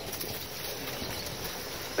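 Quiet, steady outdoor background noise with no distinct sound standing out.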